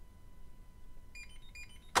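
RFID drawer-lock reader responding as a glass-capsule RFID tag passes over its copper coil: a quick string of short, high beeps in the second half, then a sharp click as the lock releases.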